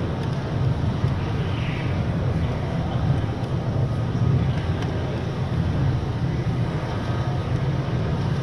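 A steady low rumble that holds an even level throughout, with faint voices in the background.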